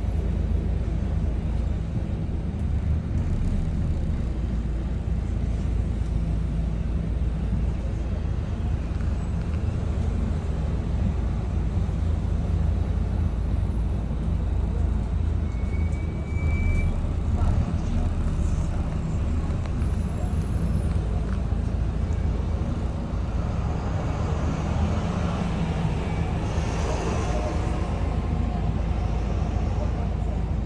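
Volvo B9TL double-decker bus's six-cylinder diesel engine running steadily under way, heard from the upper deck over road and traffic noise.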